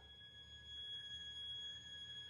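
Faint, steady high-pitched tones held as a thin ringing, with a low hum beneath.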